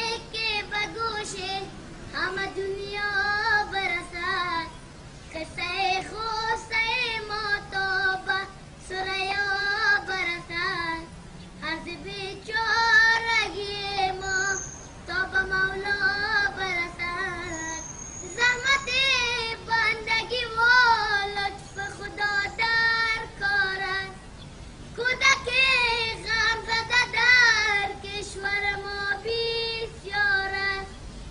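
A boy singing solo in a high voice, in phrases of a few seconds with a wavering, ornamented pitch and short pauses for breath between them.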